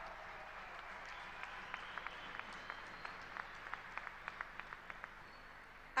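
Audience applauding: a steady patter of many hands with single louder claps standing out, thinning and dying down toward the end.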